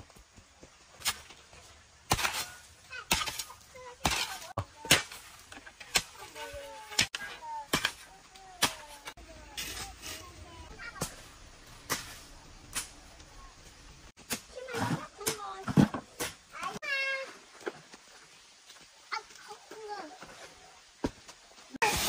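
Hand shovel and hoe digging sand and soil and tipping it into a plastic bucket: a run of sharp scrapes and knocks, roughly one or two a second, thinning out in the second half. Faint children's voices come in between.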